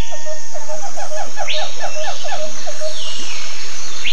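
Tropical jungle ambience: a steady high insect drone under an animal call repeated in short quick notes, several a second, that stop shortly before the end, with a few higher calls breaking in.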